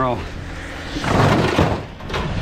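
A metal bed frame being handled and shifted on a load of scrap, giving a short scraping rattle about a second in.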